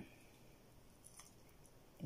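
Near silence, with a few faint soft clicks and wet sounds from hands pulling apart raw chicken innards (gizzard and intestines), the clearest click a little past the middle.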